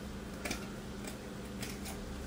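Scissors cutting through cloth: a few faint, short snips.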